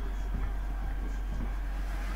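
Steady low background hum, even in level throughout.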